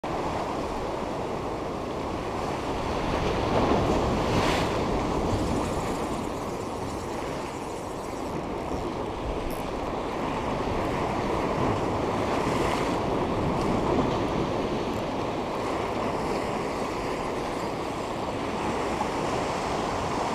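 Sea waves breaking and washing against shoreline rocks in a steady roar of surf, swelling a little louder a couple of times.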